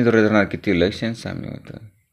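Speech only: a narrator reading aloud in Marathi, the voice stopping shortly before the end.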